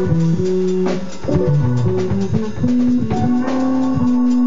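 A small band playing a groove together: an electric bass guitar line of held low notes that step up and down in pitch, a drum kit with regular hits, and a keyboard playing above them.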